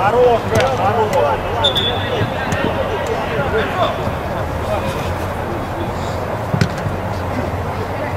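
Players shouting to each other on a football pitch, with a few sharp ball kicks; the clearest kick comes about six and a half seconds in. A brief high tone sounds just under two seconds in.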